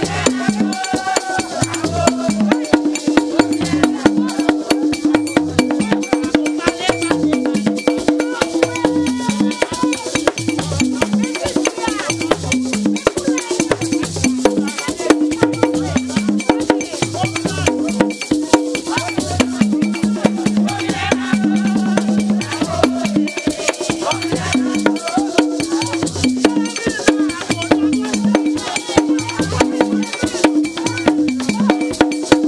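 Haitian Vodou ceremonial drumming with a steady, dense beat, and a group of voices singing a chant over it.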